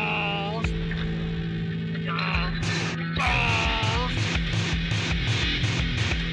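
Lo-fi rock song by a guitar band, with a voice singing or yelling in short phrases. About three seconds in, the band gets louder and settles into a steady beat of about three strokes a second.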